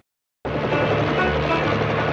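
Military helicopter flying in, its rotor and engine a loud, steady thrum that starts abruptly about half a second in after a moment of silence.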